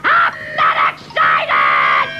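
A cartoon character's voice yelling excitedly in short outbursts, then a steady held tone in the second half.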